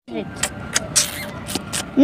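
Outdoor street ambience: a steady background hiss with faint voices and a few brief clicks.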